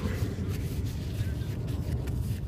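Steady low rumble of distant background noise from traffic and aircraft, with faint rustling of hands being handled near the microphone.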